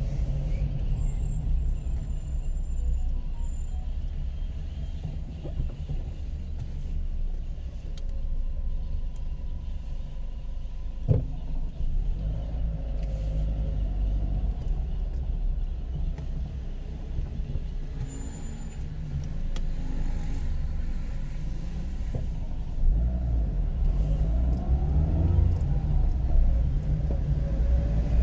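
Steady low rumble of a car being driven through city traffic, engine and tyre noise, with one sharp knock about eleven seconds in.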